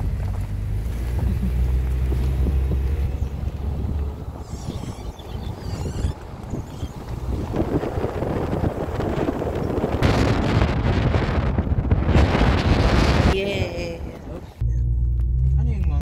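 Wind rushing and buffeting over the microphone of a phone filming from a moving car, over a low road rumble. The rumble is heaviest at first, and the rushing grows loudest in the second half before dropping away near the end.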